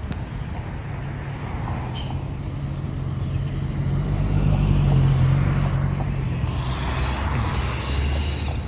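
Motor vehicles moving through a parking lot: a low engine drone that swells to its loudest about five seconds in, then eases off.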